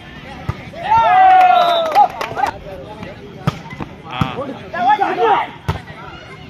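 A volleyball struck several times during a rally, each hit a sharp slap, with a long loud shout about a second in and more shouting from players and spectators.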